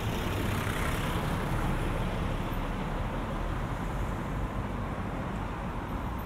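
Steady city road traffic noise, a little louder in the first couple of seconds and then easing slightly.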